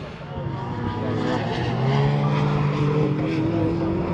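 Several racing cars' engines heard from a distance as a group of cars runs through a section of circuit, their notes climbing slowly in pitch and getting louder over the seconds.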